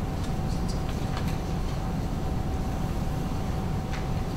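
Steady low rumble of room background noise with a faint steady hum tone, and a few light rustles of paper sheets being handled in the first second or so.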